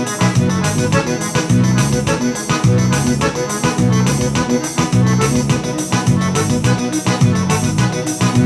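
Piano accordion playing a tune: a melody on the right-hand keyboard over a steady, rhythmic bass-and-chord accompaniment from the left-hand buttons.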